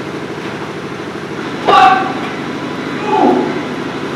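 A steady hum with two short snatches of a man's voice: a sharp syllable a little under two seconds in, and a brief low murmur a little after three seconds.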